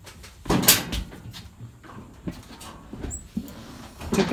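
A short scraping rush about half a second in, followed by a few light knocks and clicks: handling noise as parts of a zero-turn mower are moved.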